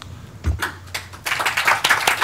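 A low thump about half a second in, then audience applause breaking out about a second later and growing.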